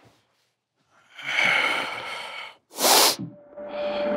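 A man's voice: a drawn-out strained 'ahh' lasting about a second and a half, then a short, sharp burst of breath.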